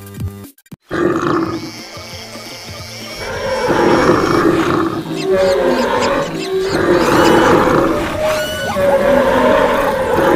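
A mix of animal roars and calls from many animals at once over background music, after a brief dropout just under a second in; it grows louder about three seconds in.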